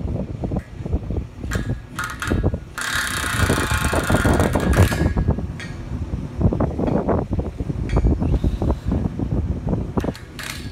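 Wind buffeting the microphone in uneven gusts, with a few sharp clicks and then a loud hiss lasting about two seconds, starting about three seconds in.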